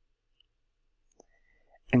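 Near silence in a pause of speech, broken by a couple of faint short clicks about a second in; a voice starts speaking at the very end.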